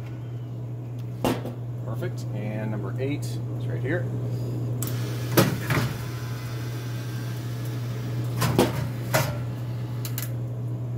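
Steady low hum of a soda vending machine, with several sharp mechanical clicks as its vend-motor switches are worked with a screwdriver to run a vend.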